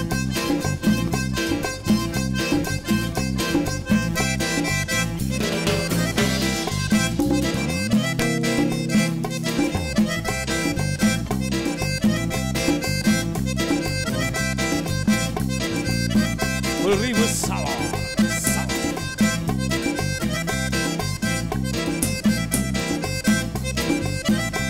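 Live band music led by a Hohner button accordion, with timbales and guitar keeping a steady dance rhythm. About eight seconds in, the bass drops out for about two seconds, then comes back.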